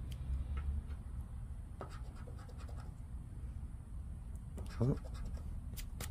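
A scratch-off lottery ticket is scratched with a poker-chip scratcher, in short, scattered scrapes as the latex coating comes off the card.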